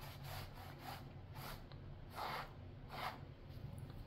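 Cloth rag rubbed over wet acrylic paint on a painted panel to lift paint off. It makes a series of faint, short rubbing strokes, about two a second, that stop shortly before the end.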